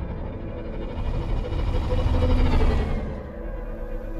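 Low underwater rumble that swells about two seconds in and then fades, under sustained ominous background music with a faint falling tone.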